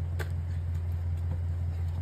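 A steady low hum with a faint click about a quarter of a second in.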